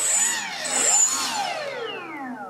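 Electric motor and propeller of a twin-motor RC model plane spinning up. The whine starts suddenly, rises in pitch for about a second, then falls steadily as the propeller winds down.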